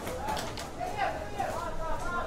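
Men's voices talking, with a few short clicks among them.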